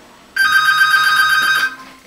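Electronic telephone ringing: one trilling ring lasting just over a second.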